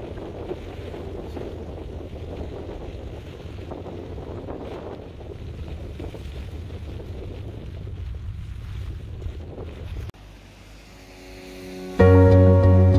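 Steady rumbling, rushing noise, like wind buffeting a microphone, which drops away sharply about ten seconds in. Music comes in softly near the end.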